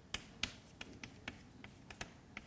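Chalk on a blackboard while writing: a string of sharp, irregular taps and clicks, about seven in two seconds, each time the chalk strikes the board.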